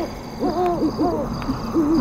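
An owl hooting, a run of several short pitched hoots.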